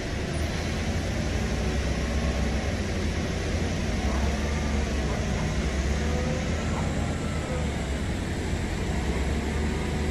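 Toyota forklift's engine running steadily with an even low rumble while it maneuvers a load.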